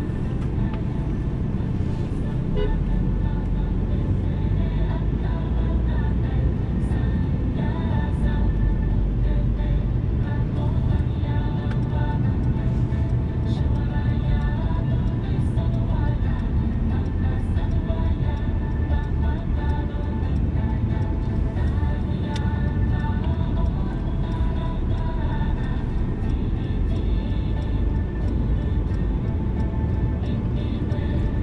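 Steady low rumble of a Mercedes-Benz car driving in town traffic, heard from inside the cabin, with music and a voice playing over it.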